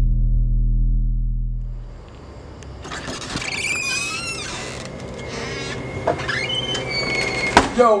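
Low intro music fades out in the first two seconds. A door then squeaks open in several high, wavering squeals, with a sharp click shortly before the end.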